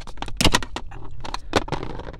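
Small flathead screwdriver prying at the plastic lock of a Jeep door wiring-harness connector: a run of small clicks and scrapes, the loudest about half a second in.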